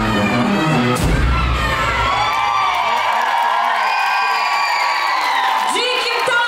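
Dance track with a heavy bass beat that stops about three seconds in, followed by an audience cheering and whooping.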